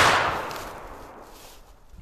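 A black-powder muzzleloading rifle shot going off right at the start, its report dying away over about a second and a half.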